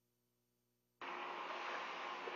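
Dead silence for about a second, then a steady VHF marine radio static hiss cuts in suddenly as the channel opens for the next transmission.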